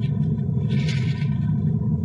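A low, steady rumble with a brief hiss about a second in.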